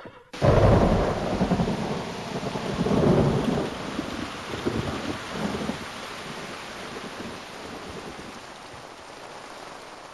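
A rumble of thunder starting about half a second in and swelling again around three seconds in, over heavy steady rain that slowly fades.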